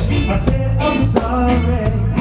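Live roots reggae band playing, with a heavy bass line, drum kit and electric guitar.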